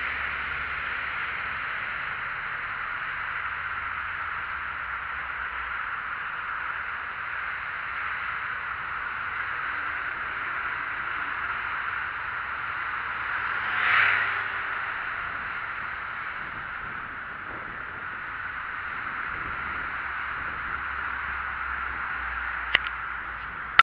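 Steady rushing noise of a bicycle ride picked up by a handlebar-mounted action camera: wind and tyres on asphalt. About fourteen seconds in, a moped passes, swelling and fading within a second or so.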